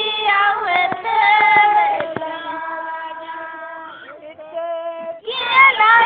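Female voices singing a Sindhi/Kutchi mehndi folk song in long, drawn-out notes. Near the middle the singing thins to one softer, long-held note, and the full voices come back loudly about five seconds in.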